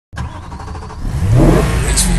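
Car engine revving, rising in pitch and getting louder about a second in.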